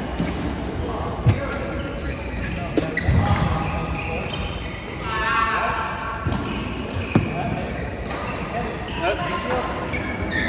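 Badminton rackets striking shuttlecocks in a large echoing sports hall: a string of sharp hits, one every second or so, with the murmur of players on the surrounding courts.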